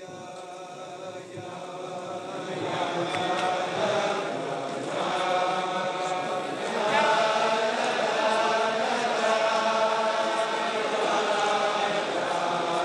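A crowd of men singing a Chassidic melody (niggun) together in long sustained notes. The singing fades in over the first few seconds, then carries on steadily.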